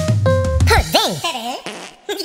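Cartoon musical sound effects: a few short notes over a low buzzing tone, then a pitch that swoops up and down several times, ending in a short hiss.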